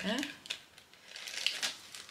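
Clear plastic packet crinkling as it is handled, a few short crackles about half a second in and again near one and a half seconds.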